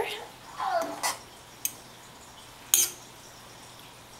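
A metal spoon stirring wet yarn in a stainless steel pot of water, clinking twice against the pot, the second clink louder, with quiet water sounds.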